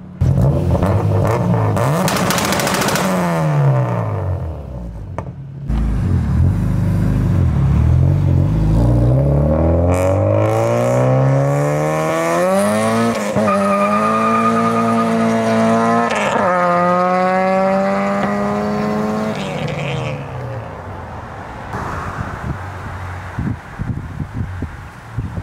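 A Honda H23A 2.3-litre four-cylinder engine in a 1992 Accord is pulled hard. After a first burst of revs that dies away, it winds up steadily through the gears, with two upshifts where the pitch drops and climbs again. Near the end the sound falls away.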